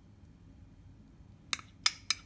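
Quiet at first, then a metal spoon clinks twice against a small glass cup, about half a second apart, as the last of the marinade is scraped out of it.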